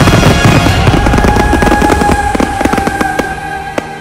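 Fireworks: a dense barrage of bursts and crackle that thins out about halfway through to scattered sharp pops as the display dies away, with music playing underneath.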